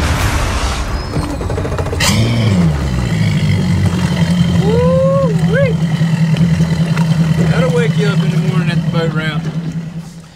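Mercury Verado 300 V8 outboard running steadily as the boat cruises, a low even hum that swings up and back down in pitch about two seconds in and then holds. Intro music with a beat ends as the engine sound comes in, and a short voice-like call rises and falls around the middle.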